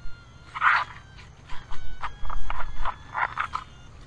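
Nokta Makro Simplex metal detector sounding a series of short signal tones as its coil is swept back and forth over a buried target that reads a solid 85, pinpointing it.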